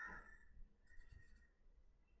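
Faint scratching of a pencil drawing short strokes on paper, in two short spells in the first second and a half.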